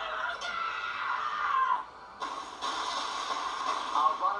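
A man's drawn-out screams of rage from an anime soundtrack, two long screams with a short break about halfway through.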